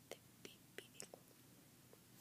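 Near silence: faint room hiss with about half a dozen very short, soft clicks scattered through it.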